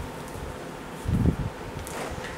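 Silicone mat lifted off a flat heat press and laid down on a table: a soft, low thump about a second in, with a faint click near the end, over a faint steady hum.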